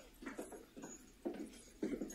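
Faint film soundtrack playing in the background: a handful of short, muffled sounds spread through the two seconds.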